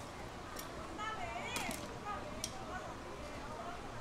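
Voices talking in the background while a knife cuts through a stingray's flesh and cartilage, giving a few sharp clicks.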